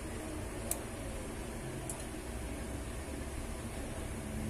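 Steady low hum and hiss of room noise, with two faint ticks, one under a second in and another near two seconds.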